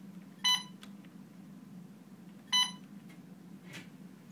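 Alaris PC infusion pump beeping, one short electronic beep about every two seconds, twice. A sharp plastic click near the end comes as the syringe is seated in the pump's syringe module.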